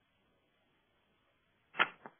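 Near silence, then a single short, sharp noise near the end, followed by a fainter one.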